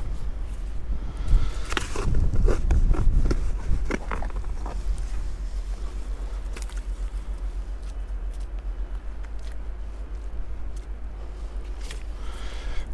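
Boots shifting and scraping on wet sand beside a dug hole, with clicks and knocks from the sand scoop and detector being handled. This is busiest from about one to five seconds in, then sparse, over a steady low rumble.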